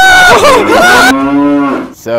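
Voices for about a second, then a single low moo, held steady for under a second and falling in pitch as it ends.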